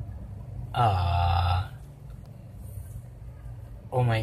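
A man's short held voiced sound, steady in pitch and lasting under a second, about a second in; otherwise only faint low background.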